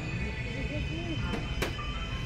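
Shop background sound: faint voices and in-store music over a steady electrical hum, with a brief click about a second and a half in.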